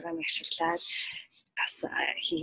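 Only speech: a woman talking in Mongolian, with a short pause about a second and a half in.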